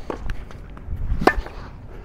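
Tennis ball struck during a groundstroke rally: one sharp pop of racket on ball about a second and a quarter in, with a few fainter taps before it.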